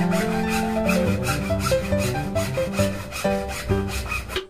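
Hand saw cutting through a green bamboo pole in quick back-and-forth rasping strokes, over background music.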